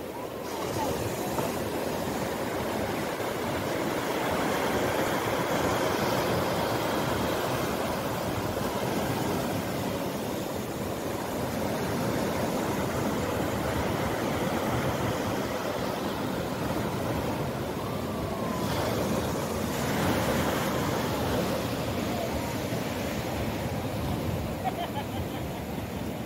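Shallow surf washing up and back over a sandy beach: a continuous rushing wash of water and foam that swells a little as waves run in.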